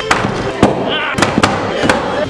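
A hammer beating on a solid bed frame to knock it apart: about five heavy, sharp blows at an uneven pace.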